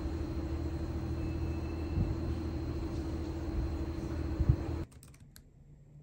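Steady outdoor background noise, a low rumble with a constant hum, that cuts off suddenly near the end. It gives way to quiet room tone and a few light clicks.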